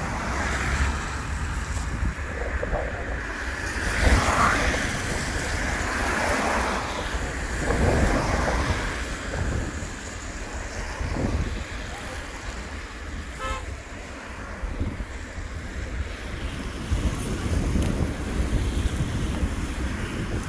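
Wind buffeting the microphone over a steady hiss of traffic on a wet road, swelling louder about four and eight seconds in.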